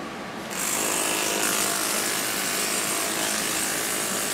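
Corded electric dog clippers switched on about half a second in, then running with a steady motor buzz.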